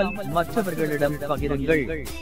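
A person's voice, its pitch gliding up and down in short sing-song phrases with no clear words.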